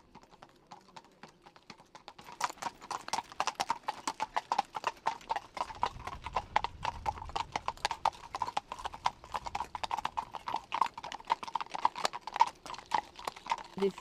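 Horses' hooves clip-clopping on a paved road: many overlapping steps from a carriage pair and ridden horses. Faint at first, then much louder from about two seconds in.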